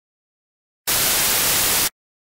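A loud burst of television static hiss, about a second long, that cuts in just under a second in and cuts off suddenly.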